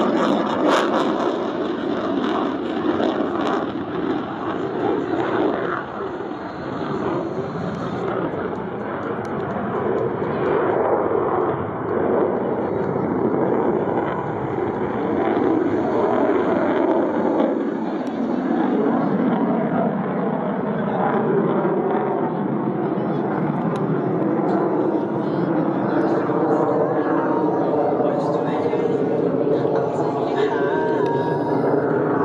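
Steady jet noise from an F/A-18F Super Hornet's twin General Electric F414 turbofan engines as the jet flies a slow, high-angle-of-attack pass. Indistinct voices can be heard underneath.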